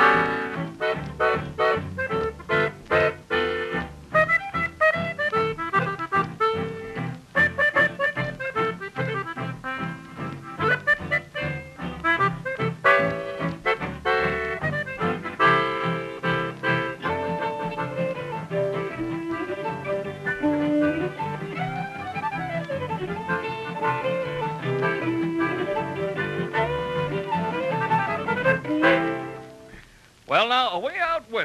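Old-time hillbilly band playing an instrumental number, a melody line over a steady strummed rhythm, heard off an old radio transcription recording. The tune fades out just before the end.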